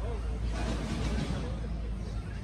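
Faint voices over a steady low rumble, with a brief rush of noise lasting about a second near the middle.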